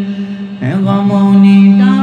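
A man singing an Urdu naat unaccompanied into a handheld microphone, drawing out long wordless held notes. The voice dips briefly about half a second in, swells into a loud sustained note, and steps up in pitch near the end.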